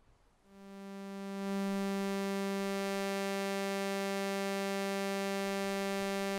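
Vintage original ARP 2600 synthesizer, oscillator 3 sounding its sawtooth wave as one held, buzzy note. It swells in about half a second in, then holds at a steady pitch and level.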